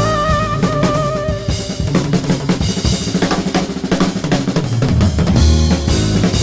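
Jazz quartet playing: a flute holds a wavering note for the first second or so, then the drum kit takes over with busy snare, rimshot and bass-drum strokes over upright bass.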